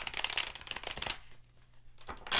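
A tarot deck being shuffled by hand: a rapid run of card flicks for about a second, then much quieter.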